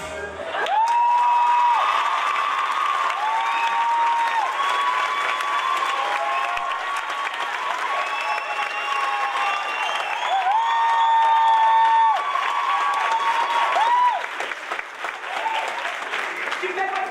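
A theatre audience applauding and cheering at the end of a musical number. Clapping starts about half a second in, with several long, high calls over it. The calls stop about 14 s in and the applause goes on a little quieter.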